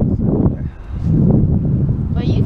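Wind buffeting the microphone, an uneven low rumble that rises and falls in gusts.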